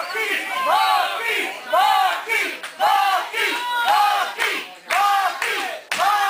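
Wrestling crowd chanting in a steady rhythm, about one loud shout a second, with high-pitched voices.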